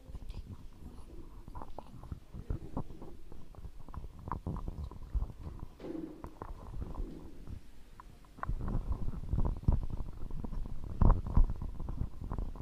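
Handling noise from a handheld microphone: irregular low thumps and rubbing as it is gripped and passed between hands, louder over the last few seconds.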